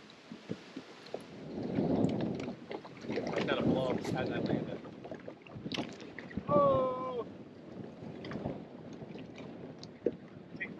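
Wind and choppy water around an open bass boat, with muffled voices and a short pitched call about seven seconds in.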